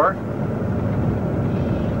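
Steady engine and road noise heard from inside a moving tour bus.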